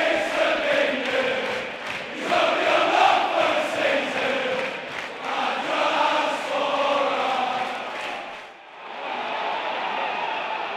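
Football stadium crowd singing and chanting in celebration of a home goal. About eight and a half seconds in, the sound drops briefly and gives way to quieter, duller crowd noise.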